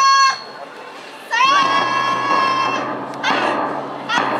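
A cheer squad leader's long, drawn-out yells in a high, shrill voice: a held call cuts off just after the start, and a second one scoops up and is held for about a second and a half. Short rising shouts follow near the end.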